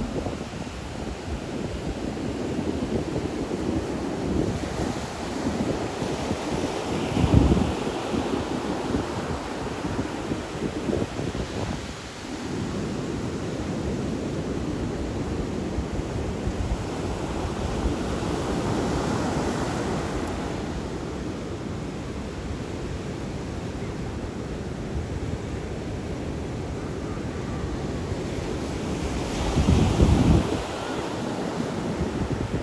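Ocean surf breaking on a sandy beach, a continuous wash of waves. Wind rumbles on the microphone in gusts, strongest about a quarter of the way in and again at the end.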